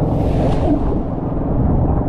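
Fishing boat's engine running with a steady low rumble, with a brief rush of wind and water noise in the first second.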